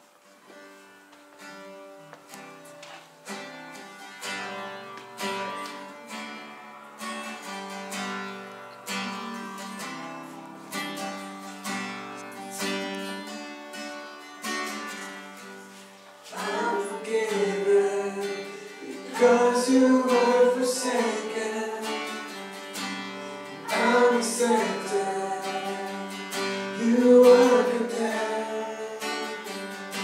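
Live worship song on a strummed acoustic guitar: a soft intro that gradually builds, then singing voices come in about halfway through and the music gets louder.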